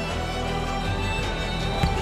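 Music playing, with sustained instrumental tones.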